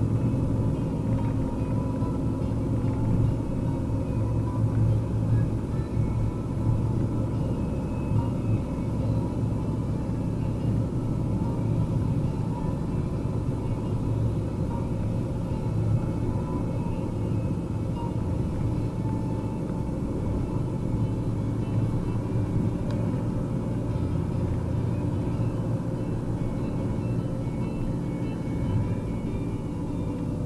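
Steady in-cab road and engine noise of a Fiat Ducato van's diesel engine and tyres while cruising: a constant low rumble with no marked changes in speed.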